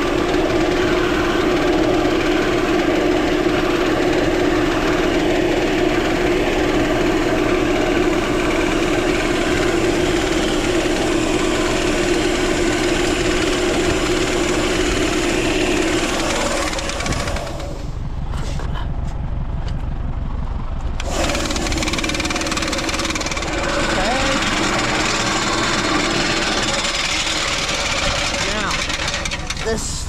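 Oat seed pouring from an overhead spout into a spreader hopper, over machinery running steadily. A strong steady hum stops about seventeen seconds in, and the running noise carries on without it.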